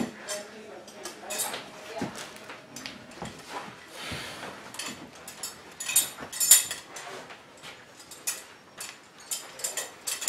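Metal clinking and rattling from the buckles of moving straps as they are handled, with scattered knocks. The loudest clinks come in a cluster about six seconds in.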